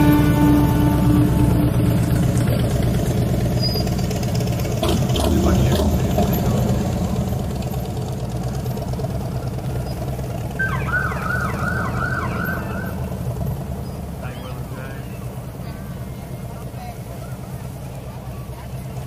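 Police motorcycle engines running as the bikes pass, fading steadily. A siren yelps briefly, with several quick rising-and-falling cycles, about two-thirds of the way through.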